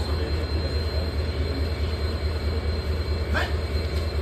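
A train at a railway station: a steady low rumble with an even pulse, and a faint steady high tone above it.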